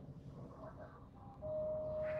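Light aircraft's piston engine running overhead, a low steady hum. About a second and a half in, a single steady high tone begins and holds.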